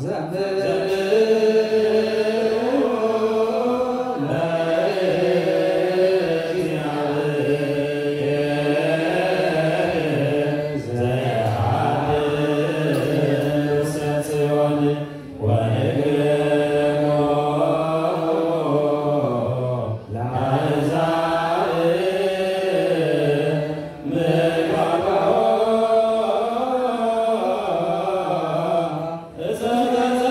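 Ethiopian Orthodox clergy chanting the liturgy together, long sustained phrases that slide between notes, with short pauses for breath every few seconds.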